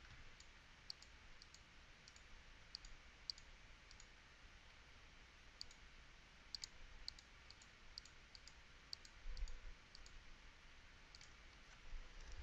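Faint computer mouse clicks, about fifteen, spaced irregularly, as keys are pressed on an on-screen calculator emulator. Otherwise near silence.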